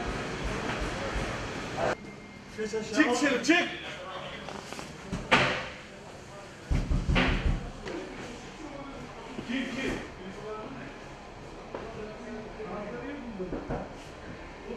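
Indistinct voices of people talking in a large room, with a sharp knock about five seconds in and a heavier thud about seven seconds in.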